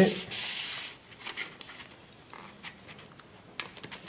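A sheet of paper rustling and being creased by hand as the tail flaps of a paper glider are folded. The rustle is loudest in the first second, then only faint scattered rustles follow.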